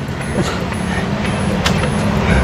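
Yamaha supermoto motorcycle engine idling steadily while the rider shifts up a gear with his foot, with a sharp click about one and a half seconds in.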